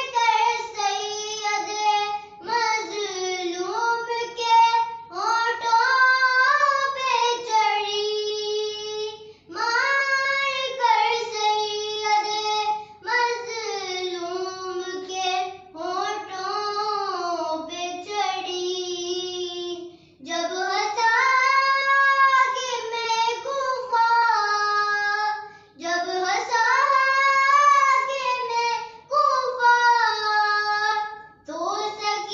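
A young girl's solo voice chanting a noha, an Urdu mourning lament, unaccompanied, in melodic phrases of a few seconds each with short breaks for breath.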